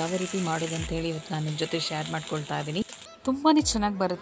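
Chicken pieces sizzling as they fry in oil in a pan, under background music with a singing voice; the sizzle stops suddenly about three seconds in.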